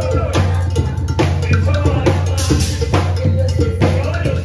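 Batucada percussion playing a steady, driving rhythm: deep bass drums under a bright bell pattern like a cowbell.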